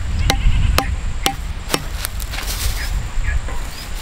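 A thin wooden stake being knocked into the soil with a hand tool: four sharp strikes about half a second apart in the first two seconds, each with a short ring, then it goes quieter. A low rumble of wind on the microphone runs underneath.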